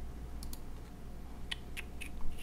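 About four quiet computer mouse clicks, two about half a second in and two more near the end, over a steady low hum.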